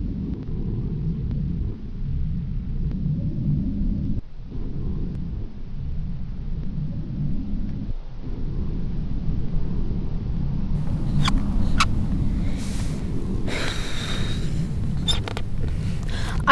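Steady low rumble of wind buffeting the microphone, with a few sharp clicks and a short hiss in the last few seconds.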